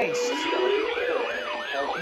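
Several weather alert radios sounding their alarms at once for a Severe Thunderstorm Warning: overlapping siren-like tones sweeping up and down about four times a second, with a steady tone that stops a moment in.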